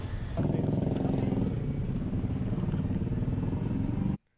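A motorcycle engine running close by: a steady low engine note with a fast pulsing, coming in suddenly about half a second in.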